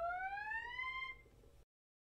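A synthesized tone gliding steadily upward in pitch, fading out about a second in.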